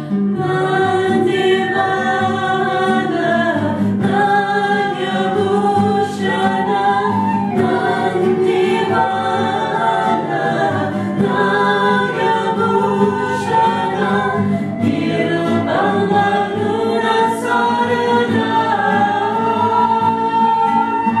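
Several women's voices singing a Shiva kirtan bhajan together, with strummed acoustic guitar accompaniment.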